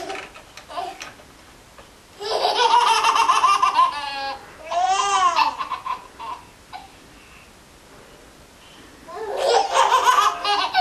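Twin baby girls laughing and giggling: a long burst of laughter about two seconds in, then a high laugh that rises and falls in pitch around the middle, a quieter stretch, and laughter starting up again near the end.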